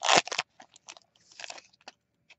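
Foil wrapper of a Magic: The Gathering booster pack crinkling as it is torn open and the cards are pulled out. A loud crackle comes first, then scattered softer crinkles and clicks.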